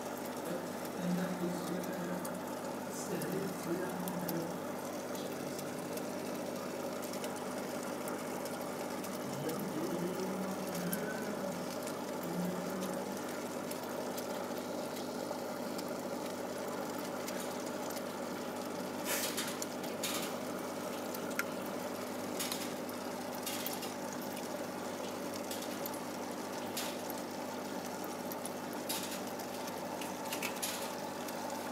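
Aquarium equipment, a pump or filter, running with a steady hum over a wash of moving water. Low, muffled voices come through in the first dozen seconds, and a few sharp clicks come in the second half.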